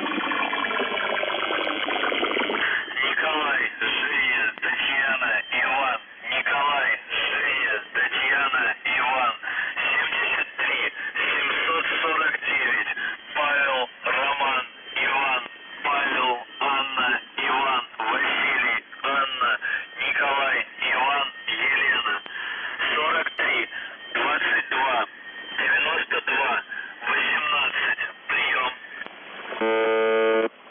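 A voice reads a coded message in Russian over a noisy, narrow-band shortwave signal from UVB-76 ("The Buzzer") on 4625 kHz. It comes in short phrases with brief pauses, crossed by gliding whistles of interference. At the very end the station's buzz tone comes back.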